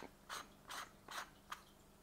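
Faint, short scrapes of a two-inch filter being screwed onto the filter threads at the bottom of an eyepiece barrel, about four twists in two seconds.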